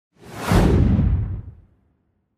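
Whoosh sound effect: a single rush of noise with a low rumble in it that swells up in the first half second and dies away by about a second and a half in.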